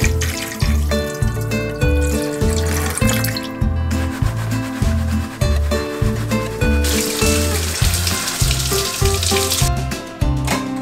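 Background music with a steady beat plays throughout. Under it, water is poured into a stainless steel sink strainer for the first few seconds, and water runs again in the last few seconds as the strainer's cover is rinsed.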